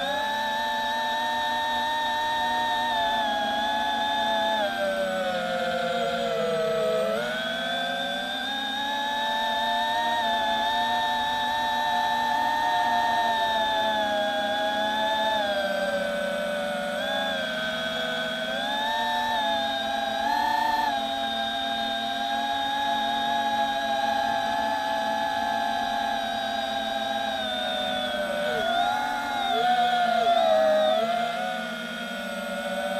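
Brushless motors of an FPV quadcopter whining in flight, several tones rising and falling together as the throttle changes, with a marked drop in pitch about six or seven seconds in.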